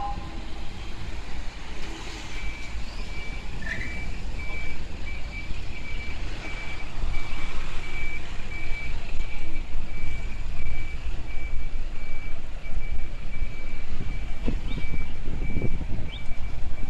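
Cars and vans driving past on a street, engine and tyre noise rising and falling. From a couple of seconds in, a high electronic beep repeats steadily, about two beeps a second.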